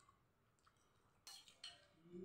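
Chopsticks knocking against a noodle bowl: two quick clicks about a second and a half in, with near silence around them.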